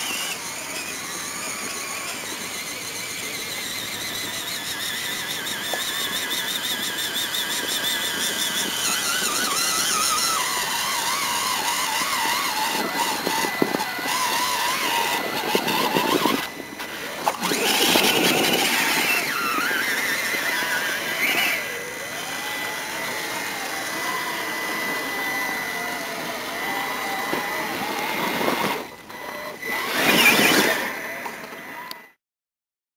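Motors and gear drives of 1/6-scale RC Jeeps whining as they crawl over rocky dirt, the pitch rising and falling with the throttle. The sound breaks off briefly twice, about halfway through and near the end.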